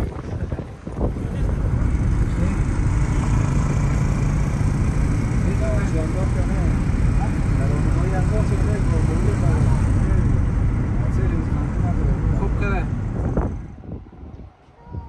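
Steady rumble of a car driving on a road, heard from inside the vehicle, with voices faintly in the background. The rumble fades out near the end.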